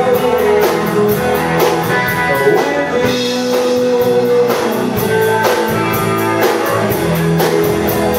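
Live rock band playing: electric and acoustic guitars, bass guitar and drum kit, with a steady cymbal beat over sustained guitar notes.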